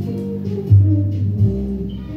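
Background music with held low notes; a stronger, deeper note comes in under a second in.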